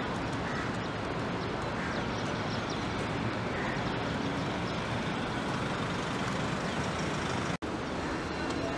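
Steady city traffic noise, a continuous hum of road vehicles, with a brief dropout near the end.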